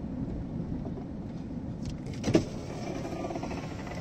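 Steady road and engine noise inside a moving car. About two seconds in there is a click, then the faint whine of a power window motor as the driver's window is lowered.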